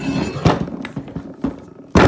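Heavy metal front-axle knuckle housing of a Kubota B7510 tractor being turned over on a wooden workbench: scraping with a couple of knocks, then a loud thud as it is set down near the end.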